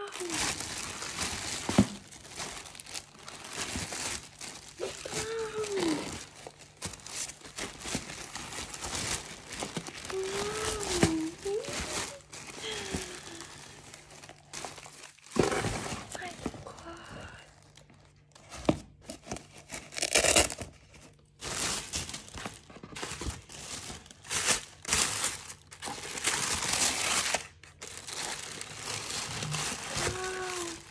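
Hands unpacking a delivery box: packaging rustling in irregular bursts, now louder, now quieter. A few short wordless vocal sounds from a woman come in between.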